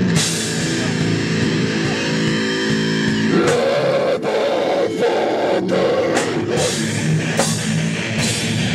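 Live heavy metal band playing: distorted electric guitars and a drum kit, loud and dense. About halfway in a harsh screamed vocal comes in over the riff, and the band cuts out in several short stop-start breaks.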